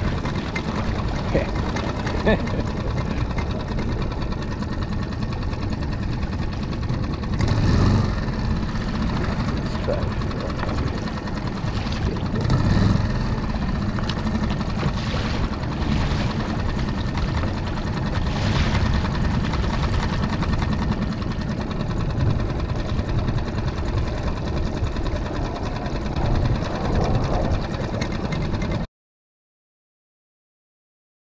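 Small outboard motor running steadily, pushing the skiff through the water, with a few brief swells; it cuts off suddenly near the end.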